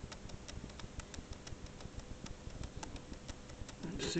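Light, irregular clicks and ticks, several a second, over a faint steady hum.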